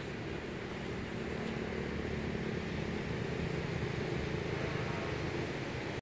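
Steady low motor rumble with a faint hum, growing slightly louder toward the end.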